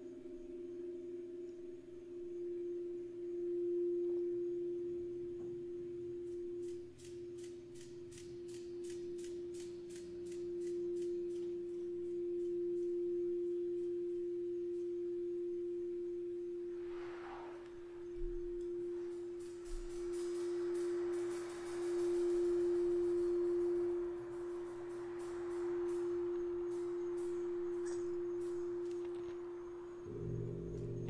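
A crystal singing bowl sounding one steady pure tone that swells and dips in slow waves. From about a quarter of the way in, a fast run of faint high ticks sounds over it, and in the second half a gong softly played builds into a quiet wash under the bowl.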